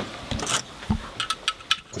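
A few scattered light clicks and knocks from guitar effects pedals and small metal parts being handled on a pedalboard.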